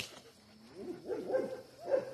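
A German shepherd whining in a string of short whimpers, each rising and falling in pitch, after a sharp click at the very start.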